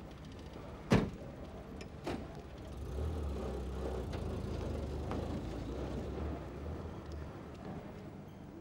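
A car door slams shut about a second in, followed by a lighter knock, then a car engine runs with a low, steady rumble for several seconds.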